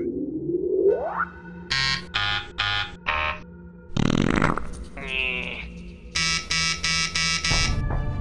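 Cartoon sound effects over a music bed: a rising whistle-like glide, then four short buzzy alarm-like beeps. About four seconds in comes a loud burst, followed by a warbling tone, then five quicker buzzy beeps and a low rumble near the end.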